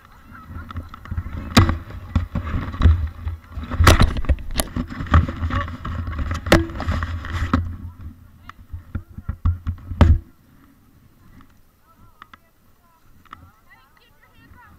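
Low rumbling and sharp knocks on a body-mounted action camera's microphone, from wind and the rider's movement in snow gear. It stops suddenly about ten seconds in, leaving faint rustling.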